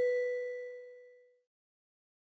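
The closing chime of an animated logo's intro jingle, a single bell-like ding ringing out and dying away within about a second.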